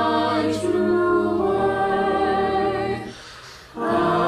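A school select choir singing a cappella, holding sustained chords. The singing breaks off briefly about three seconds in and comes back just before the end.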